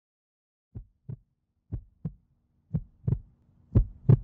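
Heartbeat-style sound effect: four pairs of deep double thumps, about one pair a second, growing louder, over a faint low hum that comes in about halfway.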